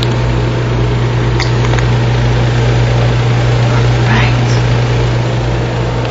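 Steady rushing hiss of a lampworking torch flame melting glass rods, with a constant low hum underneath.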